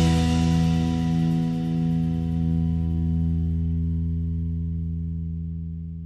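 A rock band's last chord, on distorted electric guitar, left to ring out with no more drums and slowly fading away: the end of a song.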